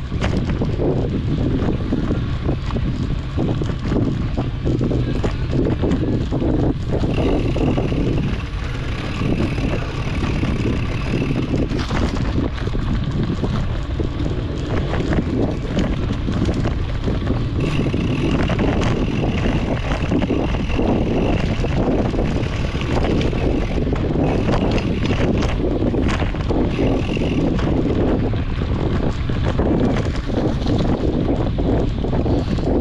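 Wind buffeting a mountain biker's action-camera microphone, over the steady rattle and knocks of the bike rolling over dirt singletrack. A thin, higher whir comes and goes several times.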